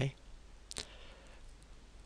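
A single short, sharp click about three-quarters of a second in, over quiet room hiss.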